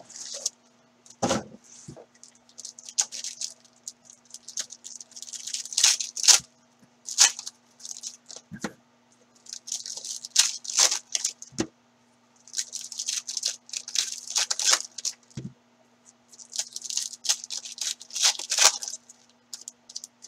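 Foil trading-card pack wrappers being torn open and crinkled by hand, in repeated bursts of crackling a second or two long, with a few soft knocks in between.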